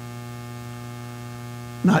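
Steady low electrical mains hum with a faint, even buzz above it.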